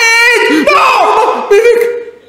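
Men crying out loud without words in excited reaction, a wavering shout followed by one drawn-out held cry that breaks off at the end.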